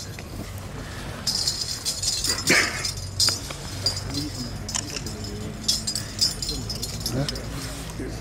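Metal medals on ribbons chinking against one another as they are handled, in short scattered jingles, over faint murmured voices.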